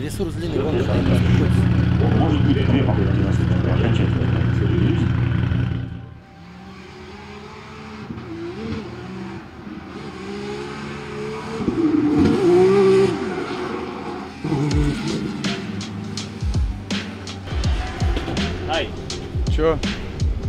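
Drift car on track, its engine revving hard and its tyres squealing through a smoky slide, mixed with background music.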